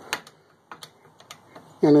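A handful of sharp, irregular metallic clicks from the hand-operated hydraulic pump rig of a homemade diesel injector tester as it is worked by hand, while it is being brought up to pressure.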